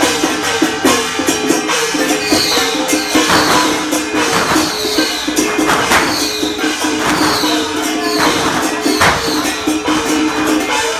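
Loud temple-procession music: percussion with cymbal-like crashes about once a second over a steady held tone and a short repeating melodic figure.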